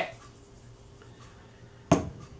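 Quiet room tone, then near the end a single sharp knock as a spice bottle is set down on a table.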